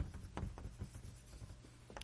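Chalk writing on a blackboard: short taps and scratches of the chalk strokes, over a low steady hum.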